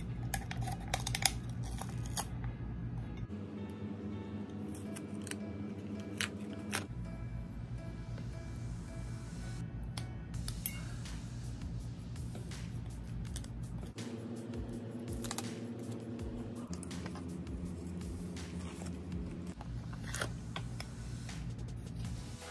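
Background music with slow held chords, over scattered crackles and small tearing sounds of butcher paper and tape being peeled off a freshly pressed sublimation mug.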